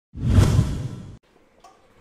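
Whoosh sound effect with a deep rumble underneath, swelling up just after the start and dying away about a second later, closing an animated logo intro.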